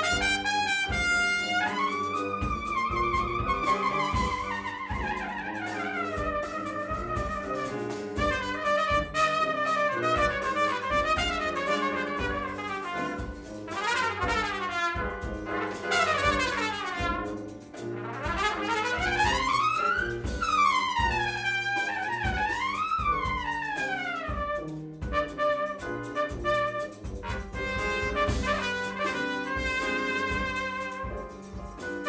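Live klezmer brass band music with a trumpet carrying the lead line over tubas and piano. The trumpet plays long held notes at first, then fast runs and steep rising-and-falling sweeps about halfway through.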